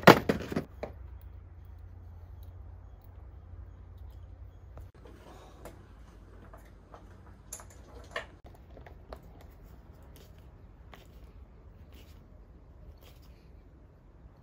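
Metal tools clattering in a tool case at the start, then scattered clicks and ticks as a socket is fitted to a ratchet wrench and the ratchet is worked on the axle fastener of a small pneumatic wheel.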